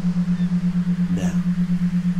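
A steady low tone pulsing evenly and rapidly, several times a second, like the beat-pulsed drone laid under a hypnosis recording. A faint brief sound comes a little over a second in.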